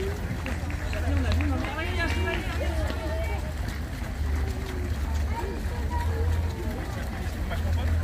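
A field of marathon runners passing on foot along the road, their running steps mixed with indistinct chatter from runners and spectators. A low rumble swells and fades about once a second underneath.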